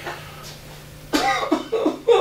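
A person's voice making a run of short, loud, broken vocal bursts, beginning about a second in after a quieter stretch, over a low steady hum.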